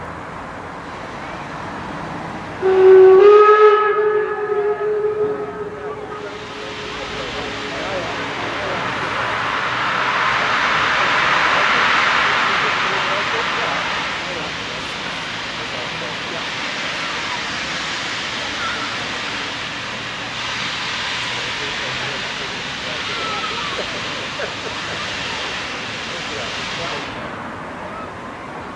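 DR class 52 steam locomotive (a 2-10-0 freight engine) sounding its steam whistle in one loud blast of about three seconds, its pitch lifting slightly as it starts. Then steam hisses from the open cylinder drain cocks, swelling for several seconds and fading near the end.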